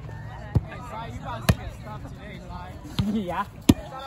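Volleyball struck by hands and forearms during a grass-court rally: four sharp slaps about a second apart, the last the loudest. Players and onlookers talk and call out throughout, with a raised voice about three seconds in.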